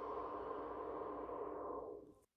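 A steady ringing electronic tone at the end of the acapella track, its bright top slowly dying away, cut off abruptly right at the end.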